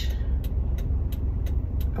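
Car engine idling, a steady low rumble heard inside the cabin, with a few faint ticks.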